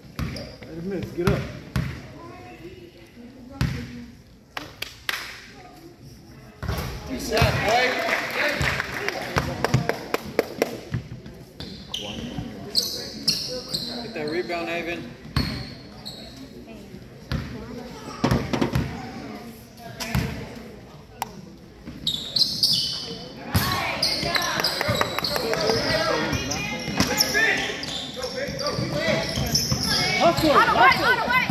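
A basketball bouncing on a hardwood gym floor, repeated thuds as a player dribbles at the free-throw line, with spectators' voices chattering in the background.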